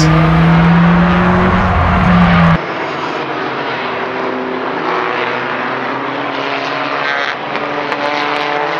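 Small hatchback touring race cars' engines held at high revs, loud and slowly climbing in pitch. About two and a half seconds in the sound cuts abruptly to a quieter mix of several race cars running through a corner.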